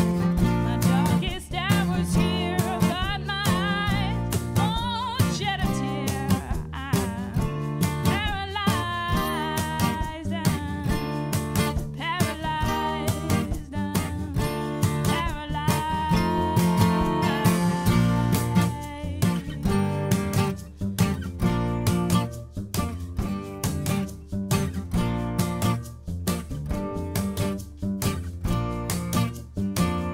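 Live band performance: a woman singing over a strummed acoustic guitar, with upright bass and a drum kit keeping a steady beat. The vocal carries through roughly the first two-thirds, and the last part is mostly instrumental, led by the guitar.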